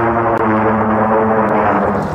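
Film sound-effect roar of an Allosaurus: one long, loud roar held at a steady pitch.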